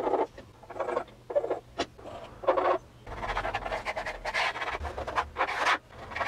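Pencil scratching on a drawing board in short separate strokes, then longer, nearly continuous strokes from about halfway as lines are drawn along a ruler.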